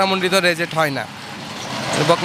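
A man speaks into a handheld microphone for about a second. His speech stops, and a steady rush of noise rises in loudness until the end.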